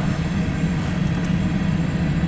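Steady low rumble of a freight train's covered hopper cars rolling past, heard from inside a car.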